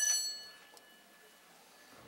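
A bell on the presiding judge's bench rung once to close the session, its clear ringing tone dying away within about half a second, then quiet room tone.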